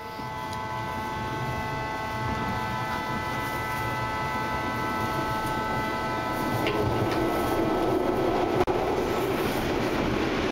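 BART train car running through a tunnel, heard from inside: a steady rumble and rush that grows gradually louder, with a set of steady high tones that fade out about seven seconds in.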